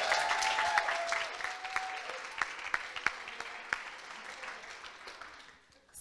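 Audience applauding, with a few voices calling out in the first couple of seconds. The clapping thins out to scattered claps, then cuts off just before the end.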